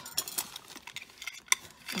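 Light clicks and rustling of small jewelry pieces and plastic bags being handled, with one sharp click about a second and a half in.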